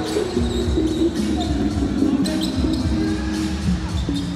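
Basketball being dribbled on a hardwood court, with repeated bounces and short sneaker squeaks, over music with held notes.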